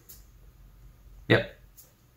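Only speech: a man's single short 'yeah' about a second in, otherwise quiet room tone.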